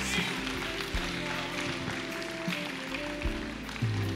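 Soft worship music playing under the congregation: long sustained chords held steadily, at a low level.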